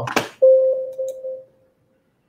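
A single electronic alert tone: one steady mid-pitched note that starts sharply about half a second in and fades away over about a second.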